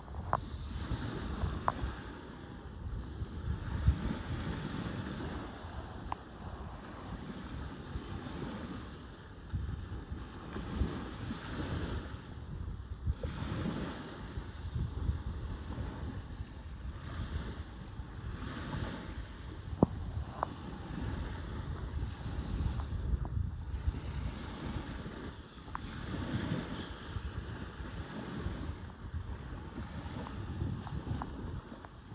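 Wind buffeting the microphone by the sea, a low rush that swells and eases in gusts every few seconds, with a few short sharp clicks.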